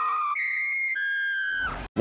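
Cartoon squirrel's high, shrill, whistle-like scream, held on steady pitches: it jumps higher about a third of a second in, drops back about a second in, and cuts off abruptly shortly before the end.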